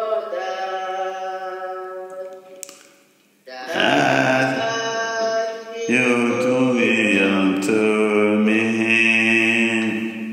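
Voices singing a slow worship song in long held notes that glide from pitch to pitch. The singing fades to a brief pause about three seconds in, then comes back louder and fuller.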